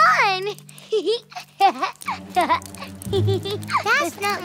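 High, childlike cartoon voices exclaiming and cooing in short wordless calls, one gliding down about the first half-second in, over soft background music.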